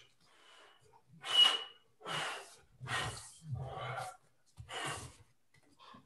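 A man's forceful breaths, five short hard exhalations about a second apart, each with a fast, strong arm movement, after a faint first second.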